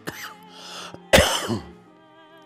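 A man coughing and clearing his throat into his fist, with one loud cough just past a second in. Soft background music plays underneath.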